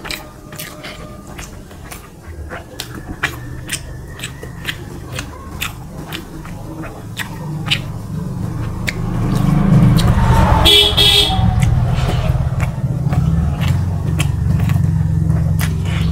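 Small wet clicks of fingers mixing rice and curry on a metal plate, then a loud low rumble builds from about eight seconds in and stays, with a short horn blast a little after ten seconds.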